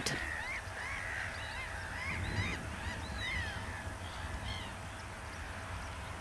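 A flock of birds calling faintly: many short calls that rise and fall in pitch, overlapping and repeated, busiest in the first few seconds and thinning out towards the end.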